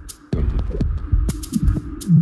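Minimal deep tech DJ mix playing: a repeating low beat with sharp high ticks over a steady hum-like bass tone. It drops out for a moment just after the start, then comes back.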